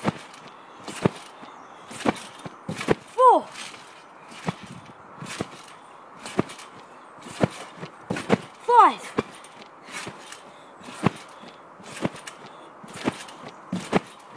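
Irregular thumps and knocks of a person's footsteps and landings close to the microphone, with two short shouts that fall in pitch, about three and nine seconds in.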